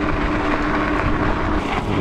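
Electric e-bike hub motor whining at one steady pitch under pedal assist, with wind on the microphone and tyre rumble over a dirt path.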